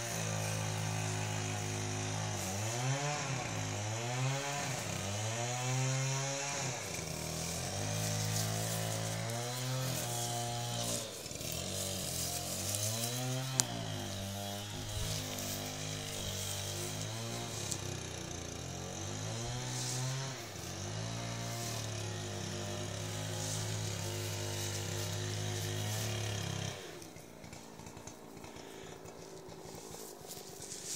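A small engine buzzing, its pitch rising and falling as it revs and then holding steady, cutting off suddenly near the end.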